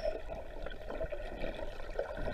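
Water sloshing and bubbling heard from just under the surface as swimmers kick through a sea cave: a steady muffled wash with small scattered ticks.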